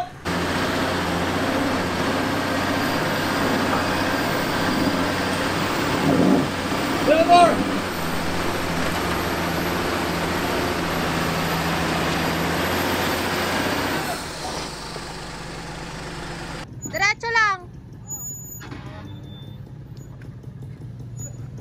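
Off-road 4x4 engine running steadily under a broad rushing noise, which drops away about fourteen seconds in. Short voice calls come around six to seven seconds and again near seventeen seconds.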